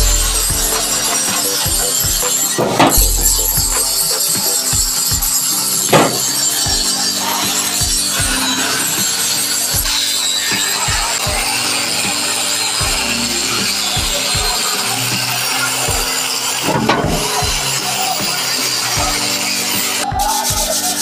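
Hand-held electric angle grinder grinding the cast-iron body of a hand sewing machine: a steady high grinding sound. Background music with a regular low beat plays under it.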